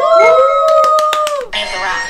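Several voices cheering together in one long 'woo', rising at the start and falling away after about a second and a half, with a few claps mixed in: a celebration of a correct answer.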